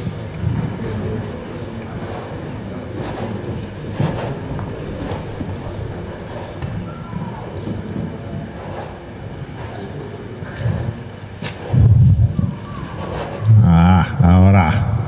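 Indistinct voices of several people talking in the background, with a louder voice about twelve seconds in and again near the end.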